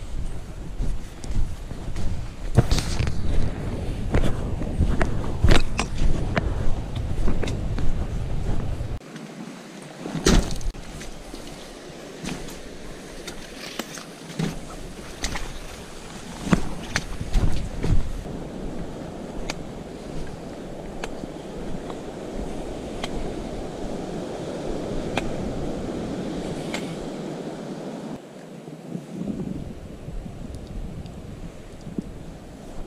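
Footsteps and trekking-pole taps on a dirt and gravel trail, with wind buffeting the microphone. The steps are heaviest over the first nine seconds or so, then lighter under a steady rushing noise.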